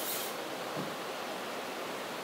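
Steady background hiss, with a brief crinkle of a foil cat-treat pouch right at the start.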